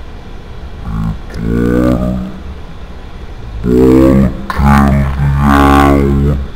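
A man's low voice chanting wordless, drawn-out 'dun' sounds close to the microphone, about four held notes, the last and longest running through the second half.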